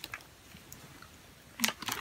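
Faint mouth sounds of a child eating a mouthful of cotton candy: soft, scattered clicks, with a short cluster of small clicks near the end.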